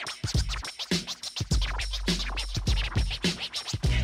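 DJ scratching a record on turntables over a hip-hop beat: a quick run of short cuts on top of a steady bass line and kick drum.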